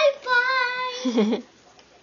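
A young child's high voice singing out a drawn-out "bye" on a steady pitch for about a second. A short, lower voice follows.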